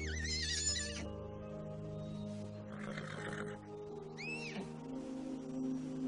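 A foal's high, wavering whinny in the first second and a shorter rising-then-falling whinny about four seconds in, over background music with sustained chords.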